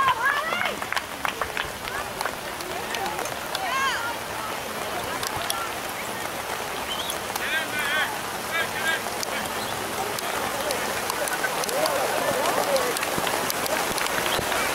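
Distant shouts and calls from soccer players and spectators, short and scattered, over a steady hiss that grows slightly near the end.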